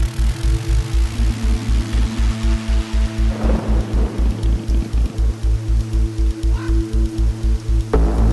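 Electronic ident music with a fast, steady pulsing bass beat under held synth tones, and a swell of hiss about three and a half seconds in.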